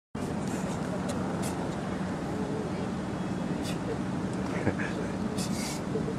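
Steady outdoor background hum of distant road traffic, with a few short high hisses over it.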